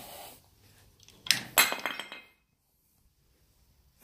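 A few sharp metallic clinks and a short rattle, about a second and a half in, from a trailer hitch lock and coupling being handled.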